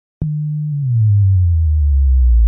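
A synthesized logo-intro sound effect: a sharp click about a fifth of a second in, then a loud, deep bass tone that slides slowly downward in pitch and holds.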